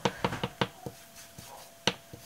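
Round ink blending tool tapped against a small ink pad and dabbed onto paper: a quick run of about five light taps, then one sharper tap near the end.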